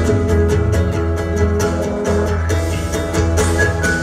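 Live pop-rock band playing an instrumental passage: keyboard with acoustic and electric guitars, strummed chords over a steady low bass, with no vocals.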